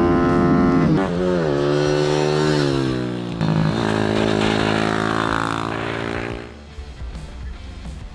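Ohvale GP-0 190 mini race bike's four-stroke engine running at high revs. Its pitch falls steadily for a couple of seconds as it slows, then steadies again before fading out near the end, with background music underneath.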